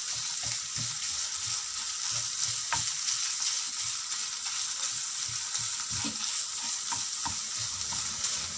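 Minced meat and chopped onion sizzling in oil in a frying pan, with a steady hiss, stirred with a wooden spoon that scrapes and taps against the pan over and over.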